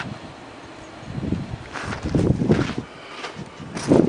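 Wind buffeting the microphone in uneven gusts, louder from about a second in.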